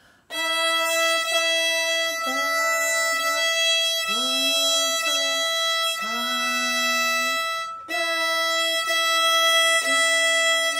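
Violin's open E string bowed in long steady strokes, with a brief break near eight seconds, while a woman sings a slow melody over it that steps downward note by note.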